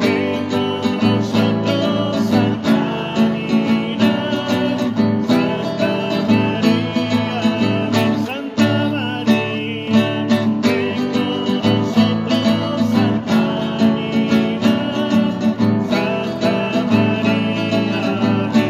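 Acoustic guitar strumming chords steadily, with a short dip about halfway through.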